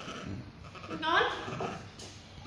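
A young long-tailed macaque calling: short, rising, high-pitched calls, a faint one at the start and a louder one about a second in.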